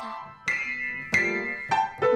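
Upright piano keys struck with a child's fists, many notes at once. Two clashing clusters sound about half a second and just over a second in, each left ringing and fading.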